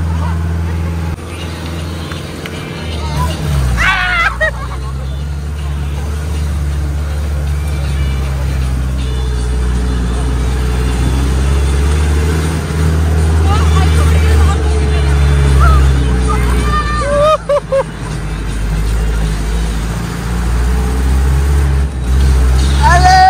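Engine of an open off-road jeep running steadily on a rough, steep track, heard from among the passengers, its pitch shifting a couple of times. Short shouts from passengers come about four seconds in and again near the end.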